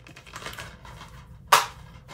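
Handling of a plastic DVD case and disc: a faint rustle, then about one and a half seconds in a single sharp plastic click.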